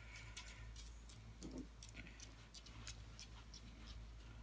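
Very quiet handling sounds: faint, scattered ticks and light rubbing as a microfiber cloth and a small tube of wax metallic paste are worked over a metal picture frame.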